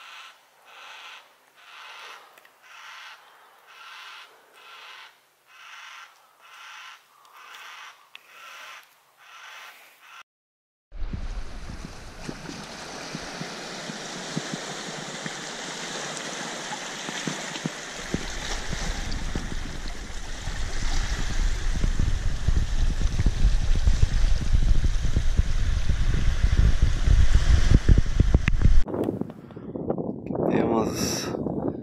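Yellow-tailed black cockatoo calling over and over, about one call a second, for the first ten seconds. It then gives way abruptly to steady wind and sea on a rocky shore, a rushing noise that grows louder and deeper about halfway through.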